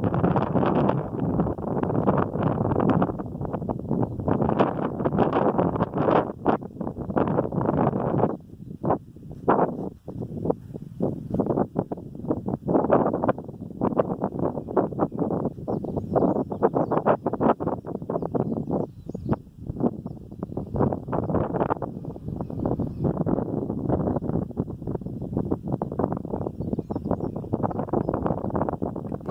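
Wind buffeting the microphone in gusts: a loud, rough low rumble that swells and drops irregularly, with a few brief lulls, the deepest about eight to ten seconds in.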